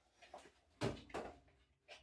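A few short knocks and clatters of dishes being handled on a kitchen counter, the loudest just under a second in.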